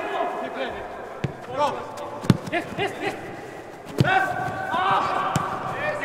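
A football being kicked on artificial turf in a large indoor hall: four sharp thuds, the loudest a little past two seconds in, with players shouting calls in between.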